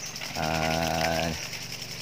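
A man's drawn-out 'aaa' hesitation sound, held for about a second at one steady pitch.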